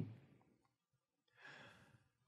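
Near silence, then a short, faint in-breath by the male lecturer about one and a half seconds in.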